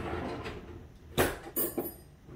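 A kitchen drawer knocks open, followed by a soft sliding rattle. Near the end metal utensils clink as a fork is taken out.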